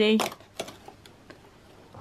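Cardboard door of a LEGO advent calendar being prised open by hand: a few faint, short clicks and taps.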